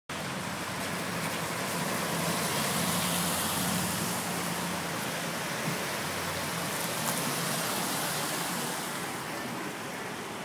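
Steady traffic noise on a wet road, with a vehicle engine's low hum through the first six seconds or so as a pickup passes close by.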